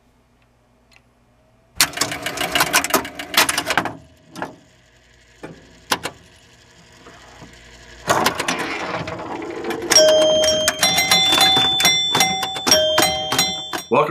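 Electromechanical pinball machine coming to life: a fast run of relay and stepper-unit clicking about two seconds in, a few single clicks, then steady mechanical clatter. From about ten seconds in, chime tones ring at several pitches among the clicks as the score reels advance.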